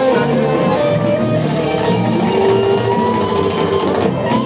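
Live rock band playing: an electric guitar carries long, held lead notes that bend slightly in pitch, over bass guitar and drums with cymbals.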